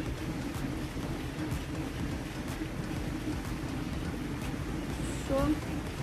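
Steady low outdoor background noise, with faint ticks about once a second.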